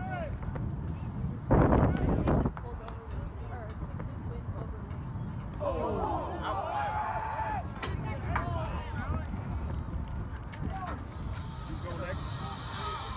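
Faint voices in the stands over a steady low background noise, with a short loud burst of noise about two seconds in.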